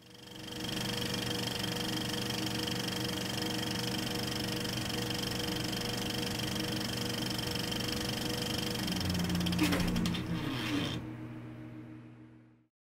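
Steady mechanical whirr and rattle of a running film projector, fading in at the start. About ten seconds in there is a brief falling sound, then the whirr thins out.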